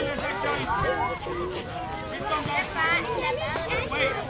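Several people's voices talking and calling out over one another: spectator chatter at a youth baseball game.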